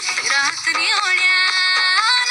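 Recorded song playing for the dance: a high singing voice over music, with short bending phrases that settle into a long held note about halfway through.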